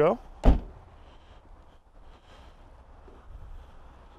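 The trunk lid of a 2014 Hyundai Genesis sedan being pulled shut: a single deep thump about half a second in.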